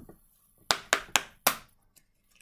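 A deck of tarot cards being shuffled by hand: four sharp slaps of cards against cards in quick succession, about a second in.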